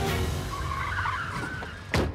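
Sound effect of a van's engine with screeching tyres, over music, ending in a sudden loud hit.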